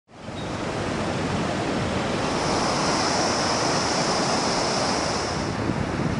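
Steady rushing noise of a truck driving along a rough dirt road, with a high hiss in the middle seconds.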